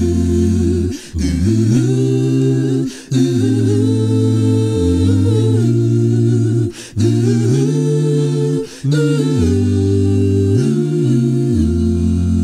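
Mixed a cappella vocal group singing wordless sustained chords over a deep bass voice, with short breaths between phrases about every two seconds.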